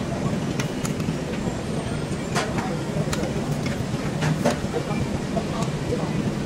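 A metal ladle clinking and scraping against a metal pot while braised beef is ladled out into bowls, a sharp clink every second or so, over a steady low mechanical rumble.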